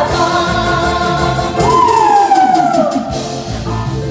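Live band playing a twist-style song, with a woman singing held notes; about halfway through she holds one long note that slides down in pitch, and the band carries on after it.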